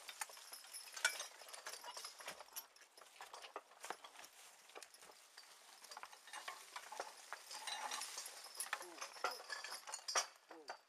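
Horse-drawn Oliver 23A sulky plow at work behind a team of Percheron draft horses: irregular clinks and knocks of plow ironwork and harness, with hoof steps and soil rustling. The sounds come thickest around a second in and again near the end.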